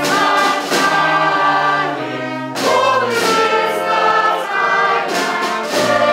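A choir singing long held chords with orchestral accompaniment, the harmony moving to a new chord a few times.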